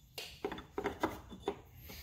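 A hand handling a choke cable and its metal mounting bracket on the engine, giving about half a dozen faint clicks and rubs.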